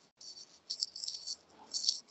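Irregular crackling rustle picked up by an open microphone on a video call, mostly in the high range, coming in several short flurries with the loudest just before the end.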